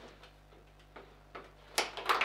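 Table football being played: a few light clicks of the ball and plastic player figures, then one sharp, loud crack near the end as a figure strikes the ball.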